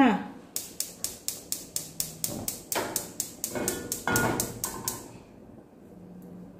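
Gas range's electric spark igniter clicking rapidly, about five clicks a second, as a burner is lit; the clicking stops about five seconds in.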